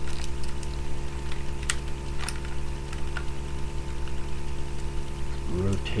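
A steady electrical hum, with two sharp clicks a little under two seconds in and again just after two seconds, from the plastic parts of a Transformers action figure being folded and snapped into place.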